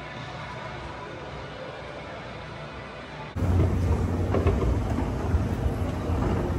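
Quiet steady room hum, then, after a sudden cut about three seconds in, a running escalator's louder steady low rumble and clatter as it carries the rider down.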